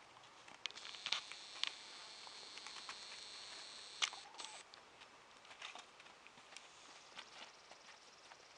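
A mare's and foal's hooves stepping on dry, sandy dirt: scattered light crunches and ticks, with a sharper click about four seconds in, over a faint steady high hiss during the first half.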